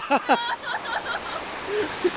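A voice calls out and laughs in the first half second, fading out by just past a second. Ocean surf washing over the rock ledge runs throughout as an even rush.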